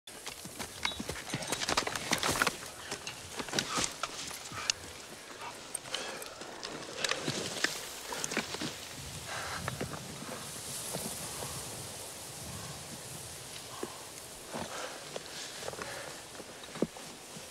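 Soldiers moving through tall grass: grass rustling, with many short clicks, taps and rattles of rifles and gear, busiest in the first few seconds.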